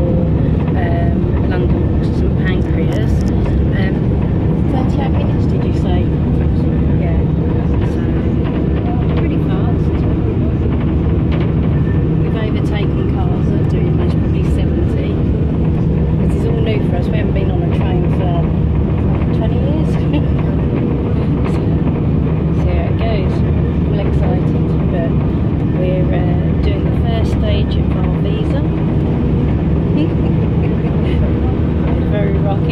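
Steady low rumble and hum of a passenger train, heard from inside the carriage, with faint voices over it.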